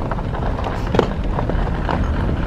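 Car driving slowly, heard from inside the cabin: a steady low rumble of engine and tyres on the road, with one short click about halfway through.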